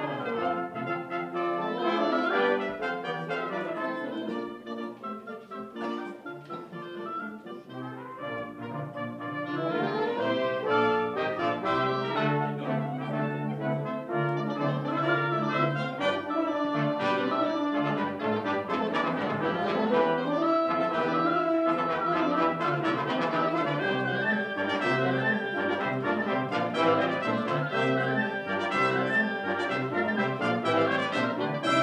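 A small wind band of flutes, clarinets, trumpets, trombones, euphonium and tuba playing a piece together. It drops softer for a few seconds near the start, swells back fuller about ten seconds in, and has a held low bass note for a few seconds midway.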